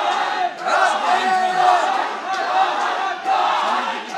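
Crowd chanting a fighter's name over and over, many voices shouting together; the audience is going crazy.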